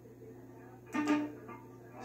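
Electric guitar (a homemade Strat-style guitar) plucked once about a second in, the note ringing briefly and dying away.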